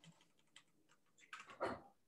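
Faint keystrokes on a computer keyboard, a few scattered clicks and then a short burst of keys about a second and a half in.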